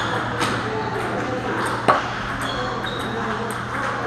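Table tennis balls clicking off paddles and tables in a busy hall, a light click every so often, with one sharp, louder knock with a short ring about two seconds in. Indistinct voices and a steady low hum run underneath.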